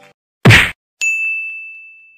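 Edited intro sound effects: a short, loud thwack about half a second in, then a ding at one second whose single high tone rings on and slowly fades.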